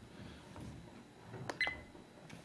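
Button press on a CAR DVR F60 dash cam: a sharp click about one and a half seconds in, followed at once by a short, high key beep as the unit switches to its settings menu.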